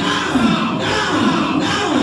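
A church congregation singing and shouting together over worship music, many voices at once, loud and steady, with a falling chant-like phrase repeating about every half second.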